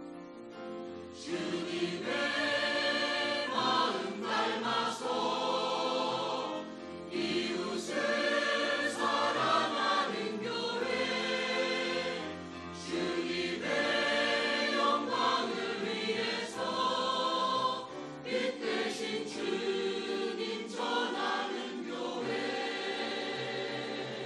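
Mixed church choir of men's and women's voices singing a hymn together under a conductor, coming in at full voice about a second in and singing in phrases with short breaths between them.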